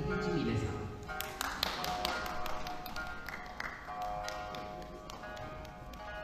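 Shamisen and shakuhachi playing an Akita folk song: sharp, quick shamisen plucks over long held shakuhachi notes.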